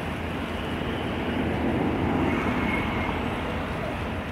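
Steady low engine rumble, swelling louder for a moment about two seconds in.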